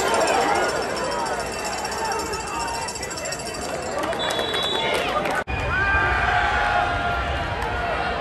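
Many voices talking and shouting over each other, football players along the sideline and crowd around them, with no single speaker standing out. The sound cuts out for an instant about five and a half seconds in, then the voices go on over a low rumble.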